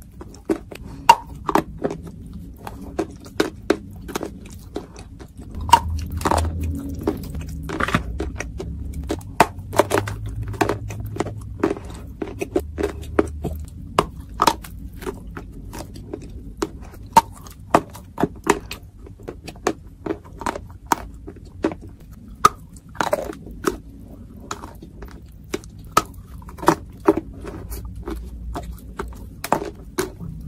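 Close-miked chewing of Turkestan edible clay in paste form: a dense, irregular run of sharp crunches and moist clicks, several a second.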